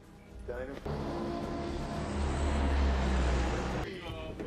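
Heavy roar of a transport plane's engines and rushing air inside the cargo hold, a deep rumble that grows louder, then cuts off sharply just before the end.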